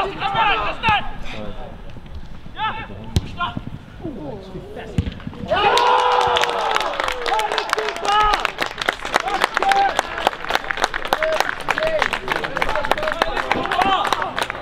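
Voices calling out across a football pitch, with a sharp knock about three seconds in. From about halfway it gets louder: more shouting over a dense crackle.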